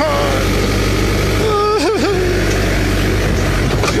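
Backhoe loader's diesel engine running steadily as the machine works at filling in an excavation.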